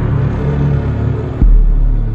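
Intro music for a logo animation: a deep, steady bass drone, with a heavy boom hitting about one and a half seconds in.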